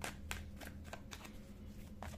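A deck of tarot cards shuffled by hand, overhand style: a run of soft, irregular card flicks and slaps.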